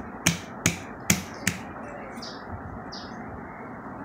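Four quick clinks of a glass lid knocking against a steel cooking pot, in the first second and a half, each ringing briefly.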